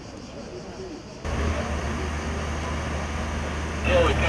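Faint voices, then about a second in the sound cuts to a steady low motor hum with outdoor noise and voices under it.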